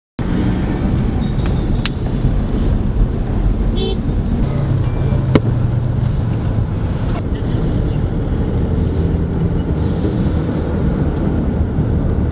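Busy city street ambience: a steady traffic rumble with people's voices, a few sharp clicks and a brief high beep about four seconds in.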